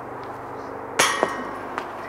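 A putted disc golf disc strikes the metal basket once with a sharp clang, about a second in, and the metal rings briefly. A couple of faint ticks follow. The disc does not stay in: a missed putt.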